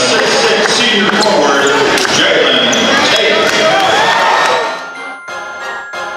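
Basketball game audio in a gym: voices shouting over crowd noise, with a few sharp knocks of a basketball bouncing on the court. About five seconds in, this gives way to a music track of steady held tones.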